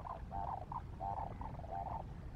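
An animal calling over and over in a quick rhythm: a longer croaking note followed by a short one, about every half second, with the calls dying away near the end.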